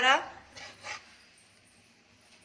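A woman's drawn-out word trails off. Then a metal spatula briefly scrapes and stirs through cooked rice in a steel pressure cooker, about half a second in. After that it goes nearly quiet.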